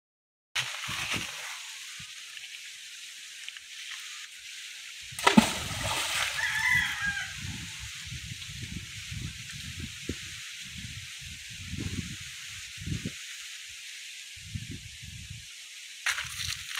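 A brick tied with rope to a bottle hits the pond water with one sudden splash about five seconds in, over a steady outdoor hiss. A bird gives a short call just after the splash.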